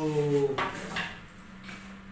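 Two sharp clicks of a hand tool working at a fitting overhead as it is being opened, about half a second apart, over a steady low hum.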